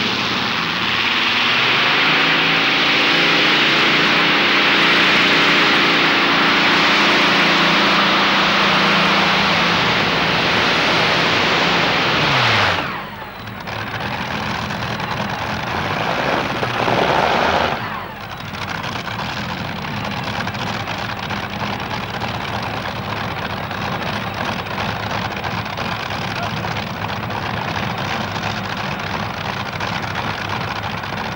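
A competition pulling tractor's engine at full power, hauling the weight sled down the track, its pitch sinking slightly just before it cuts off about 13 seconds in. From about 18 seconds it runs steadily at a lower level, idling after the pull.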